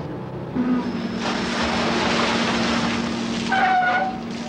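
Shrimp-processing machinery: a steady motor hum starts about half a second in and is joined by a loud rush of churning water that lasts about two seconds. A higher steady whine comes in near the end.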